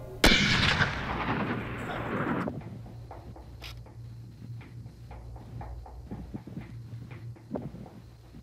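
A single hunting-rifle shot about a quarter second in, its report echoing and rolling away over about two seconds. Faint scattered clicks follow.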